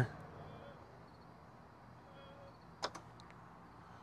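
A single short pop about three seconds in, with a couple of fainter clicks just after it, as a DC fast charger begins charging: a high-voltage contactor closing.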